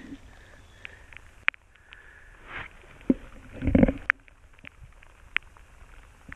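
Rubber boots scuffing and squelching on wet sand and gravel, with a few sharp clicks of small stones, and one louder scuff just before four seconds in; near the end a stone is lifted from the wet ground.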